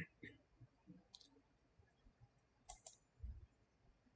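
Faint computer-mouse clicks over near silence: one about a second in, then two in quick succession near three seconds, with a soft low thump just after.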